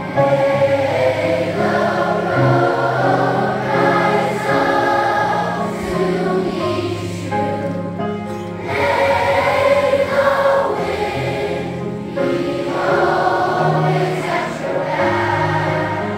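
Large children's choir singing together, with sustained low accompaniment notes underneath that shift every second or two.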